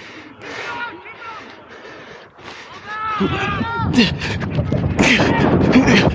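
Rugby players shouting calls across an open pitch, faint and distant at first, then louder and closer from about three seconds in, with thumps and knocks on a body-worn camera.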